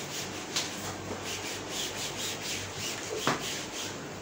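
A sponge whiteboard duster rubbing marker off a whiteboard in repeated strokes, about two a second. There is one sharper knock about three seconds in.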